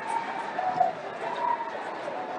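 Crowd hubbub echoing in a large hall: many voices at once, with short distant shouts rising above it now and then.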